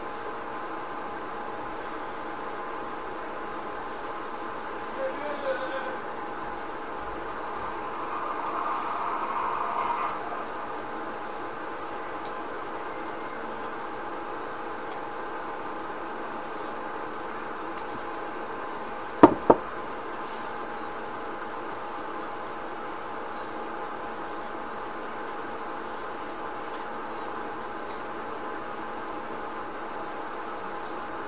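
A steady background hum made of several even tones, with a brief swell of hiss about eight to ten seconds in and two sharp knocks in quick succession about nineteen seconds in.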